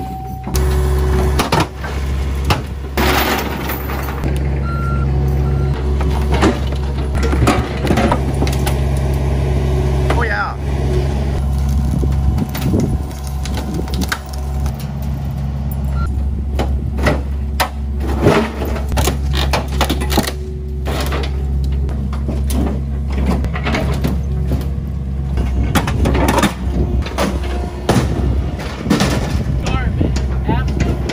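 Diesel excavator engine running steadily under hydraulic load, with repeated knocks, thuds and creaks as large logs are set onto a pickup's bed and pushed down to squeeze them in.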